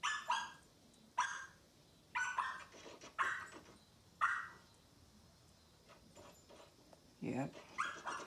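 A dog barking and whining in a film soundtrack heard through a television's speakers: a run of short, sharp barks in the first half, quieter after, with a low voice-like sound near the end.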